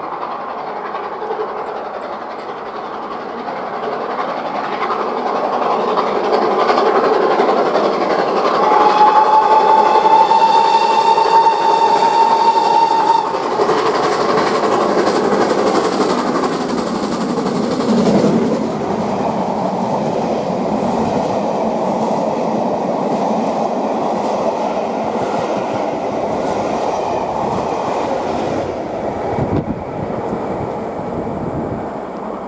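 GWR Castle-class four-cylinder steam locomotive working hard as it approaches, growing louder, with one long whistle blast a third of the way in. It passes about 18 s in, followed by its coaches rolling past with a rhythmic clickety-clack of wheels over rail joints.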